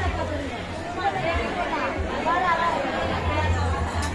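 Several people talking at once, a general chatter of voices, over a low rumble.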